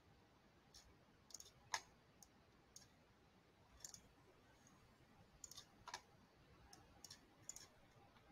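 Faint computer mouse clicks, about a dozen at irregular intervals, the loudest a little under two seconds in, over quiet room tone.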